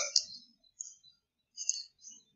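A few short, faint clicks, the first one the loudest.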